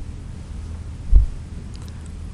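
Steady low hum with a single dull, low thump about a second in.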